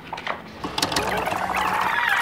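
Video rewind sound effect: a fast, chattering whir that starts about half a second in and rises in pitch.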